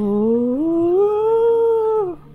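A single long, loud dog-like howl: it swoops low, rises in pitch over the first second, holds, then falls away at the end.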